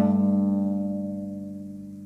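A chord on a plucked string instrument rings on and slowly dies away, its low notes sustaining as it fades, in Cambodian folk music.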